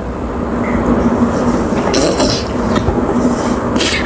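Steady running noise of a moving road vehicle, with a constant hum and road and wind rumble, and a brief hiss about two seconds in.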